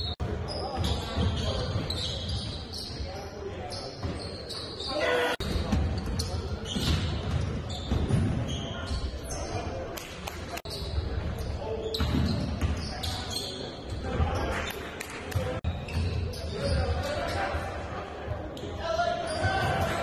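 Game sounds of live basketball play in a large gym: a ball bouncing on the hardwood floor, repeated short high-pitched squeaks of sneakers on the court, and players' voices calling out.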